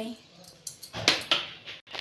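A metal spoon clinking and scraping against the side of an aluminium pressure cooker as ginger-garlic paste is knocked off onto the meat: a few short sharp scrapes around the middle.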